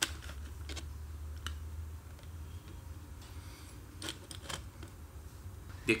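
A few light, scattered clicks and taps of fingers handling a plastic audio cassette shell, over a low steady hum.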